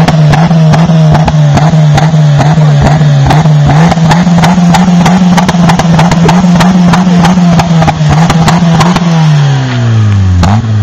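Ford Ka Mk2 exhaust at the tailpipe, the engine held steadily at raised revs with a small step up about four seconds in, then the revs falling away near the end. Loud and close, with frequent sharp clicks over the exhaust note.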